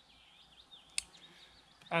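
Quiet woodland background with faint birdsong, and one sharp click about a second in; a man's voice starts again right at the end.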